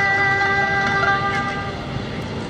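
Erhu and pipa duet holding the closing note of the piece: a steady sustained chord that fades and stops near the end.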